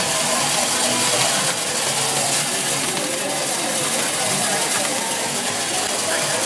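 Optical colour sorter for coffee running as it sorts green coffee beans: a steady mechanical noise with a strong hiss as the beans feed across its vibrating tray. People talk faintly in the background.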